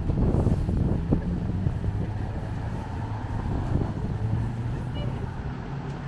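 Road traffic passing close by: car engines and tyres making a steady low hum, with indistinct voices of people nearby.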